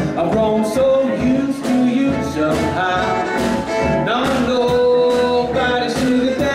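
Western swing band playing live, with upright bass and guitar under a male singing voice. A held note comes about four seconds in.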